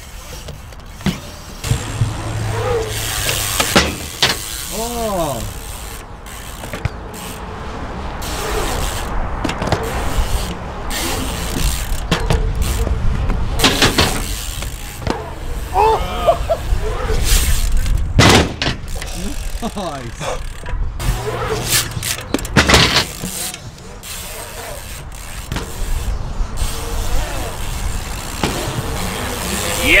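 Dirt-jump mountain bike riding on a concrete skatepark: tyres rolling on concrete with a fluctuating rumble and several sharp knocks scattered through, with short shouts from the riders.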